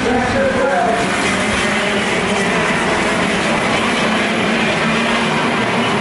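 A pack of KZ2 shifter karts, 125 cc single-cylinder two-stroke engines, running together in a loud, steady, continuous din.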